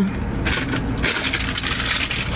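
Crackling, rustling handling noise close to the microphone, a dense run of small clicks starting about half a second in, over a steady low rumble.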